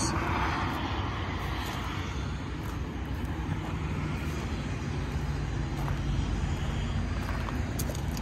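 A steady low engine drone, even throughout.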